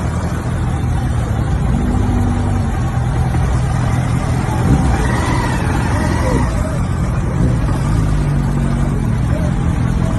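Motor-vehicle engines running in slow, dense road traffic, heard from a motorcycle in the traffic: a steady, loud low rumble of engines.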